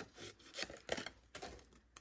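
Small paper snips cutting through cardstock: a few faint, irregular snips as the blades close on the paper.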